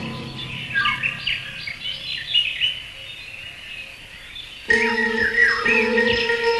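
A quick run of short, high bird chirps and tweets, the cartoon soundtrack's voice for a flying bird, thinning out after about three seconds. Near the end, music with held notes comes in, and a few more chirps sound over it.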